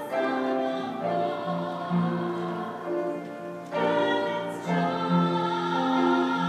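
Soprano and alto voices singing together in harmony, holding long notes that change about once a second, with a short break a little before four seconds in.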